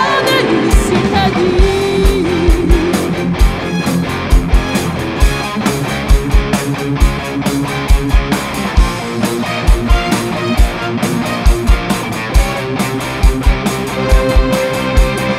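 Live rock band playing an instrumental passage, with a Fender electric guitar carrying the lead line over keyboard and bass. A kick drum hits strongly and frequently throughout.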